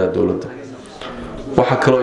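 A man speaking into a handheld microphone, breaking off briefly in the middle and starting again near the end.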